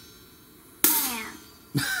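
Hi-hat struck twice with a drumstick, about a second apart, each stroke ringing on briefly before fading. A man's voice counts "and four" at the very end.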